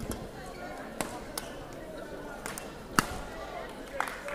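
Badminton rackets striking a shuttlecock in a sports hall rally: a few sharp hits over a low murmur of the hall, the loudest about three seconds in.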